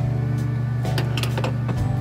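Background music: a steady low bass note with a fast even pulse, the chord changing about a second in and again near the end.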